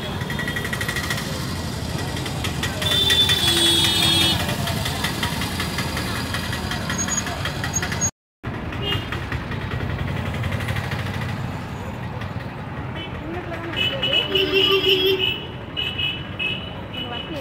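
Busy market street noise: motorcycles running close by and people's voices around. Short high-pitched tones sound about three seconds in and again near the end, and the sound cuts out for a moment about halfway.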